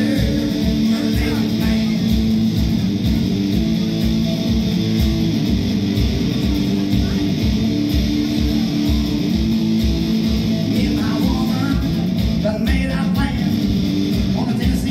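A hollow-body electric guitar strummed live through an amp, over a steady beat of low thumps from bare-foot stomping on a stomp board, with a man singing in stretches.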